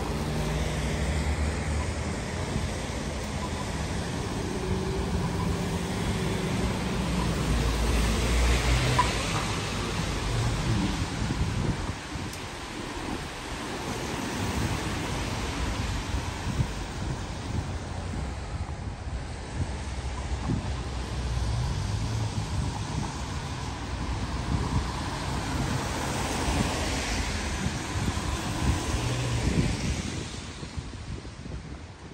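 Street traffic: cars passing on a wet road, their tyres hissing on the wet surface over a low engine rumble, with wind noise on the microphone. The loudest pass swells about eight or nine seconds in, and another near the end.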